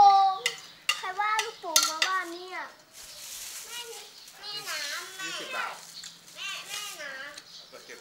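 A high-pitched voice speaking or calling in short sing-song phrases, with a few sharp clicks in the first three seconds. From about three seconds in, a plastic bag of rice noodles crinkles and rustles as it is handled.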